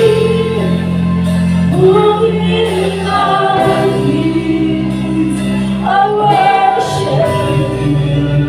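Several singers with a live worship band, singing a slow, sustained worship song together over held bass notes.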